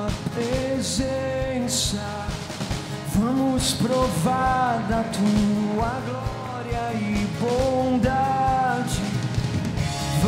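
Live worship band playing a rock-style song: a male voice sings over acoustic guitar, bass and a drum kit keeping a steady beat.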